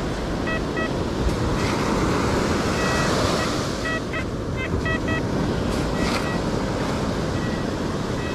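XP Deus 2 metal detector giving repeated short high-pitched beeps as its coil passes back and forth over a target reading 93–94, which the detectorist takes for a coin. Steady surf and wind noise sit underneath.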